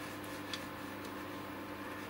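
Laser cutter running at rest with a steady low hum, with one faint tick about half a second in.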